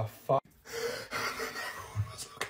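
A short spoken exclamation, then about a second and a half of breathy, voiceless laughter and gasping.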